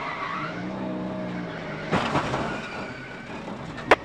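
NASCAR stock car spinning in a wreck: tyres skidding over the engine's low drone, then a heavy hit about two seconds in, the car striking the wall, with a sharp click near the end.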